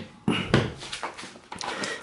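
Hands handling a figure's sculpted display base and setting it down on the table: a short knock a fraction of a second in, then fainter rubbing and a few light clicks.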